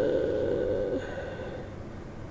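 A person's drawn-out hesitation sound, a held "uhh" at one steady pitch, lasting about a second and then fading into faint room tone.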